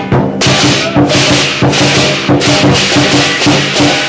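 Lion dance percussion playing loud and fast: cymbals crashing about three to four times a second over steady drum beats.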